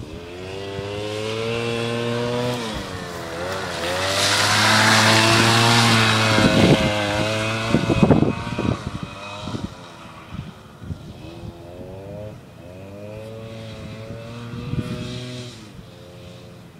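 Suzuki LT80 quad's small two-stroke single-cylinder engine revving up and easing off again and again as the ATV is ridden hard in turns. It is loudest from about four to eight seconds in as it comes closest, then quieter with distance.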